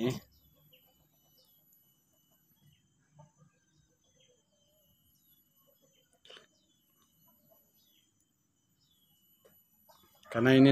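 Faint background birdsong: short chirps, each dropping in pitch, repeated every second or so. There is a soft knock about six seconds in.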